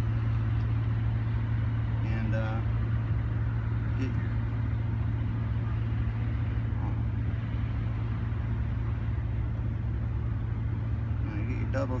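Steady low hum of an idling motor, with a few brief murmured words.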